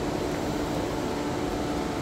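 Steady air-conditioning hum in a large indoor space: an even hiss with a faint low steady tone underneath.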